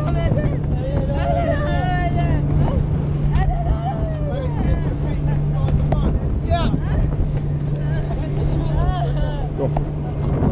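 Boat engine running steadily at low speed with a continuous hum, and several people's voices calling out over it.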